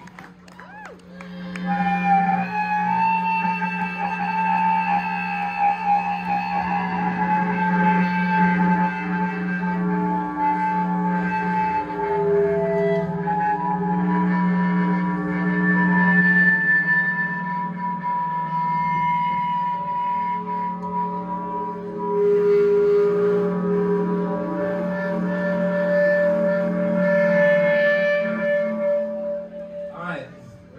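Live band playing a slow, drumless drone: a low bass note held under long, slowly shifting sustained electric guitar tones that swell in about a second in and die away near the end.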